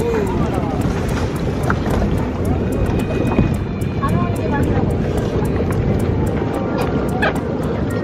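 Low rumbling wind noise on the microphone over open water, with people's voices in the background and music underneath.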